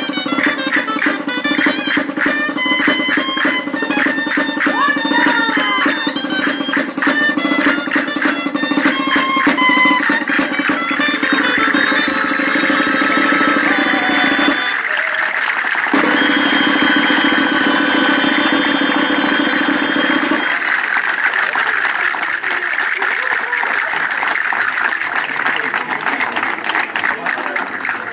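Gaitas (double-reed folk shawms) playing a dance tune, with dancers' castanets clicking in rhythm for the first ten seconds or so. The music breaks off briefly around the middle and then carries on, with voices under it.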